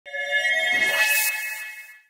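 Electronic channel-logo sting: a chord of steady synthesized tones with a brief high whoosh about a second in, fading out near the end.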